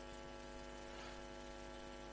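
Faint, steady electrical hum with many even overtones, like mains hum picked up in the recording.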